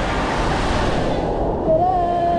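Steady rushing din of a crowded indoor water park: running water and crowd noise echoing in a large hall.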